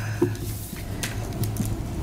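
Room tone: a low, steady hum with a few faint, scattered clicks and small shuffling sounds.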